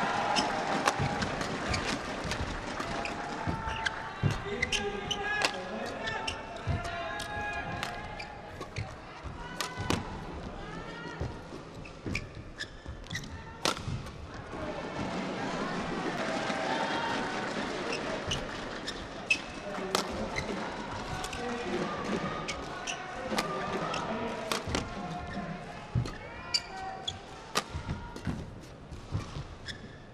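Badminton play: sharp racket strikes on the shuttlecock and footwork knocks on the court, scattered irregularly, over indistinct voices echoing in a large hall.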